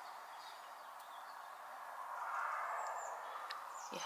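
Faint outdoor background: a soft hush that swells a little in the second half, with a few faint, short high bird chirps.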